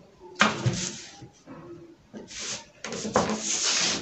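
A clear plastic pattern-drafting curve ruler being moved and laid on pattern paper: a few short bursts of rustling and scraping, with a longer one near the end.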